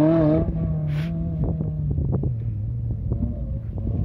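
Maruti Suzuki Gypsy rally car's engine running under load on a gravel track, its steady note dropping lower about two seconds in as the car pulls away, with scattered ticks and crackles over the rumble.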